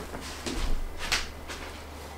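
A person moving about a small room: a few soft rustles and bumps of handling, one sharper rustle about a second in, over a low steady hum.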